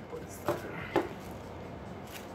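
Scissors cutting: two short snips about half a second apart.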